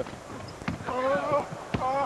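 Basketball game in play on a hardwood court: a few sharp knocks from the ball and players' feet on the floor. A voice calls out from the arena about a second in.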